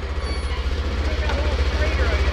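Polaris side-by-side engine running at low revs with an even low pulse, getting gradually louder as it takes up the tow strap.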